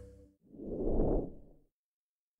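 The tail of background music fading out, then a single short whoosh sound effect that swells up and dies away within about a second, as the end-card logo animates away.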